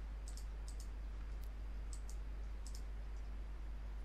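Computer mouse clicking: several short, sharp clicks, mostly in quick pairs, over a steady low hum and faint hiss.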